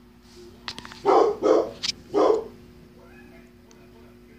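A dog barking three times in quick succession, with a couple of sharp clicks around the barks and a steady low hum underneath.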